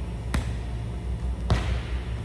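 A volleyball struck twice in about a second: a sharp thud as it is hit with the heel of the hand in a standing roll shot, then a second thud as it lands on the wooden gym floor across the net, over a steady low hum.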